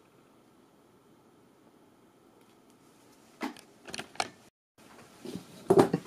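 About three seconds of near silence with a faint room hum, then a few short taps and rustles of hands handling things on the table, broken by a brief dead cut-out in the middle.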